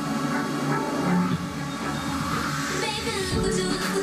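Electronic pop music from a girl group's music-video teaser, with a deep beat starting near the end.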